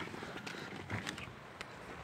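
A few faint clicks and knocks over a low rustle, as a person climbs out of a car with a phone in hand.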